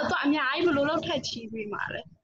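A person talking, with no other sound standing out.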